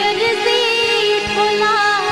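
A woman singing a folk song, holding and bending long notes, over a steady instrumental drone with a few soft drum beats.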